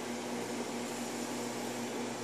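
Microwave oven running: a steady hum with the even whir of its fan and no change over the two seconds.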